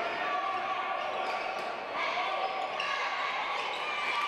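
A basketball dribbled on a hardwood gym floor, with the steady chatter and calls of a crowd and players in the gym.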